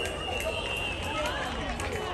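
Voices of players and spectators chattering around a football field, with one steady high whistle note held for about a second and a half: a referee's whistle blowing the play dead.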